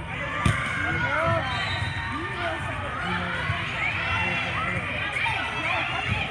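A volleyball struck hard by hand on a serve, a single sharp slap about half a second in. Spectators and girls shout and chatter in a large gym throughout.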